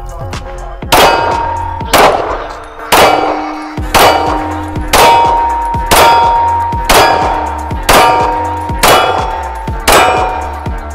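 9mm Tisas Zigana PX9 Gen2 pistol firing a steady string of single shots, about one a second, starting about a second in. Each sharp report is followed by a ringing tone that fades before the next shot.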